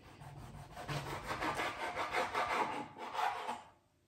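Chef's knife sawing back and forth through a whole aubergine on a plastic cutting board, a quick run of scraping strokes that stops near the end.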